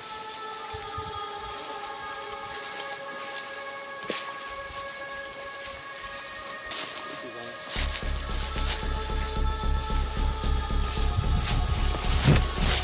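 Electronic background music: held synth chords with the bass dropped out, then the deep bass and beat come back about eight seconds in.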